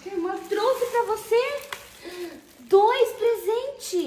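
A high-pitched voice speaking in two short phrases with no words the recogniser caught, the second starting a little under halfway through.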